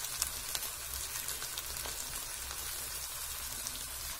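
Sliced okra and onion sizzling in hot oil in a kadhai: a steady frying hiss with scattered small crackles.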